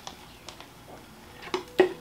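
Clear plastic jar handled on a wooden tray: mostly quiet, with a light tap about half a second in and a couple of short knocks near the end.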